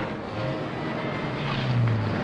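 Taxicab engine running as the cab pulls away: a low hum that grows louder and climbs slightly in pitch in the second half.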